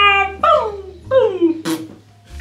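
A high voice making three wordless calls in a row, each sliding down in pitch, then a short sharp click near the end.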